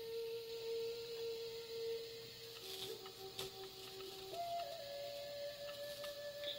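Quiet ambient meditation music of long held, pure tones that step to a new pitch a few times.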